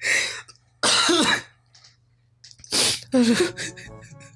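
A man in a fit of hard laughter, coughing and spluttering in three loud bursts, with quiet gaps between them.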